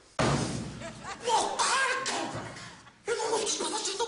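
A sudden thump of hands slapping down on a wooden desk just after the start, followed by laughter and wordless vocal sounds.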